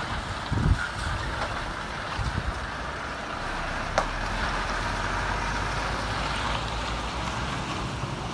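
Heavy tractor unit hauling a loaded low-loader trailer, its diesel engine running as it drives slowly past, with wind buffeting the microphone. A sharp click comes about four seconds in, and a steady low engine rumble holds from then on.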